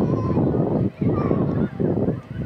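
Wind buffeting the microphone in heavy gusts, dropping out briefly about a second in and again near the end, with faint distant voices calling out.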